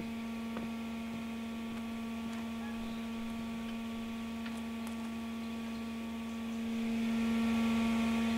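A steady low hum with a stack of even overtones, swelling a little over the last second or so, with a few faint ticks.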